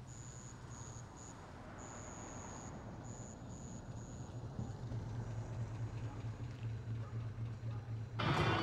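A police car's engine running low and steady as the car rolls slowly closer, its hum growing gradually louder.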